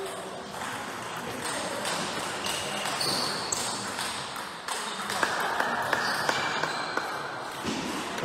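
Table tennis rally: ball clicking off bats and table in a quick run of sharp clicks in the second half, over the noise of a sports hall.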